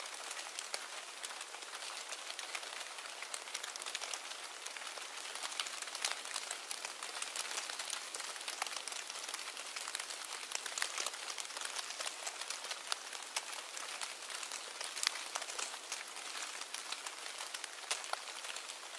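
A steady hiss thick with fine, dense crackles, with no tones or music.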